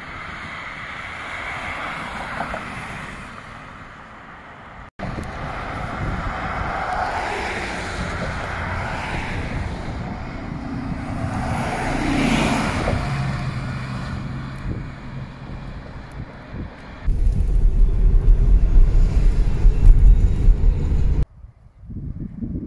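Road traffic heard in several short cuts: a city bus drives past close by about twelve seconds in, its engine and tyre noise swelling to a peak and fading, then a steady engine hum. Near the end, loud wind rumble on the microphone.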